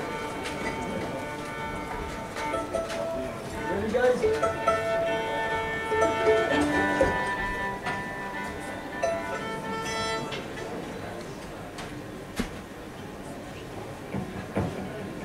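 Violins playing quiet held notes, with a few sliding pitches, over crowd noise. The notes stop about ten seconds in, leaving the low murmur and a few clicks.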